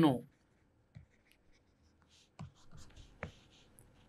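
Faint pen strokes while writing by hand: a few short, soft scratches about a second in and again in a cluster in the second half.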